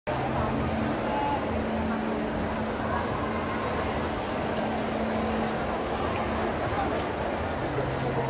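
Crowd of visitors chattering: a steady din of many overlapping voices, with a faint low hum underneath.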